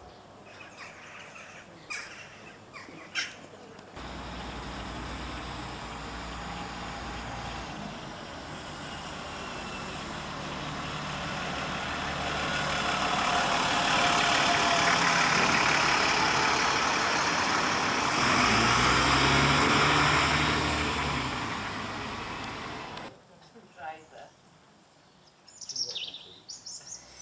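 A diesel bus engine running close by. It starts suddenly, builds to its loudest through the middle with a deep engine note, and cuts off abruptly a few seconds before the end.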